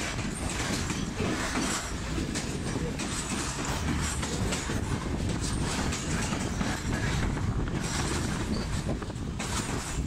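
Class S8 diesel multiple unit running along the track, heard from its open doorway: a steady rumble of wheels on rails, with irregular clicks from the wheels over the track.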